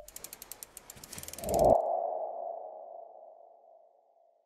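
Logo-reveal sound effect: a quick run of mechanical ticks, like a ratchet winding, then a single ringing tone that swells about a second and a half in and slowly fades away.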